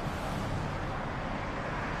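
Steady street ambience with the low, even rumble of a car and traffic.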